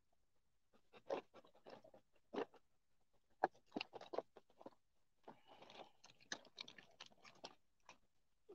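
Faint, irregular crunching of a dog chewing a chewable preventative treat, in short spurts that come thicker toward the end.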